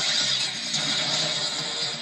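Loud cartoon action music mixed with dense sound effects, played on a television and picked up off its speaker.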